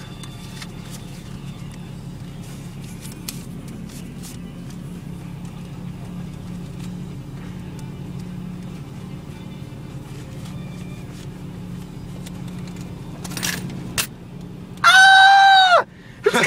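Automatic car wash heard from inside the car's cabin: a steady low hum with water and cloth brushes working over the windshield, and scattered light ticks. Near the end, a brief loud, high-pitched yelp from a person.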